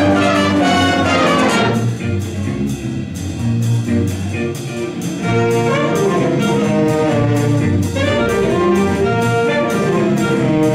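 High school jazz band playing an up-tempo big-band swing chart, brass led by trumpets over a steady fast beat from the drums. The band thins out to a softer passage about two seconds in and comes back in full about five seconds in.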